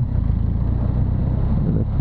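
BMW R1200 GS Adventure motorcycle's flat-twin (boxer) engine running steadily in city traffic, a low-pitched drone.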